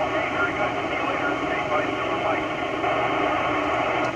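FM receiver audio from the AO-91 amateur satellite's downlink on an Icom IC-9700 transceiver: steady radio hiss, with a faint, noisy voice of another station coming through it.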